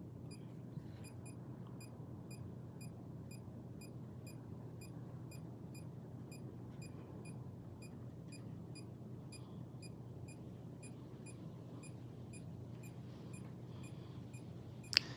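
A handheld GQ EMF-390 EMF meter beeping its alarm: short high beeps repeating evenly about twice a second, faint, over a low steady hum.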